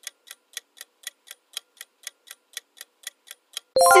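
Countdown-timer sound effect: a clock ticking steadily about four times a second. Just before the end it gives way to a bright ringing chime marking the answer reveal.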